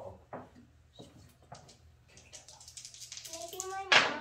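Yahtzee dice rattling: a few separate clicks, then a quick dense clatter lasting about a second and a half as the dice are shaken and rolled. A short loud voice cry comes at the very end.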